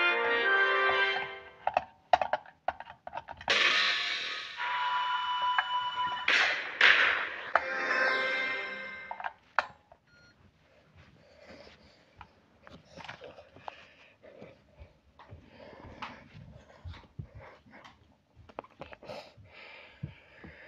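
Television production-logo music jingle with several loud swells, ending about ten seconds in, followed by faint, scattered soft clicks and rustles for the rest.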